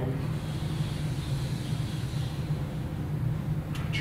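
Steady low room hum, with the faint scratch of a whiteboard marker drawn along a straightedge during the first couple of seconds.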